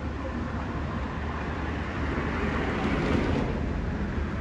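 Street traffic: a vehicle passing on the road, its noise swelling to a peak about three seconds in and fading, over a steady low rumble.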